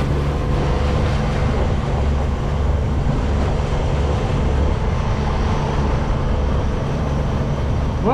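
Sailboat's engine running steadily under way, a continuous low rumble with a haze of wind and water noise.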